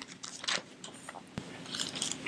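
Pages of a Bible being handled close to a lapel microphone: faint rustles and crinkles, with one sharp click about one and a half seconds in.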